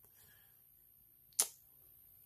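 Near silence, broken once by a single short, sharp click about one and a half seconds in.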